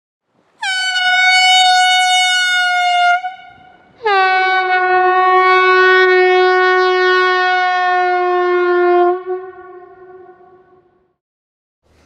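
Compressed-air horn sounding two long blasts while it is moved past at about 6.5 m/s: a blast of about two and a half seconds, then one of about five seconds. Its pitch sinks slightly over the longer blast before the tone fades away, the Doppler drop of the horn passing by.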